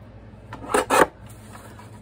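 A sliding paper-trimmer blade cutting through a watercolor-paper panel, two short scraping strokes close together about a second in. A steady low hum runs underneath.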